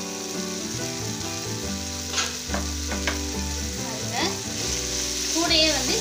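Soaked chana dal sizzling in hot oil with a tempering of onion, dried red chillies and curry leaves, stirred in the pan with a few short scraping strokes.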